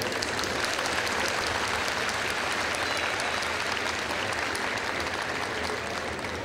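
Audience applauding: dense clapping that is fullest in the first few seconds and eases off slightly near the end.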